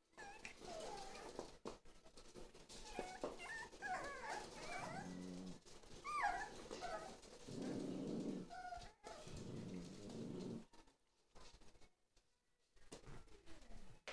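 Several Jack Russell Terrier puppies whining and yipping with short high squeals that rise and fall, mixed with stretches of low growling. They go quiet for a moment a few seconds before the end.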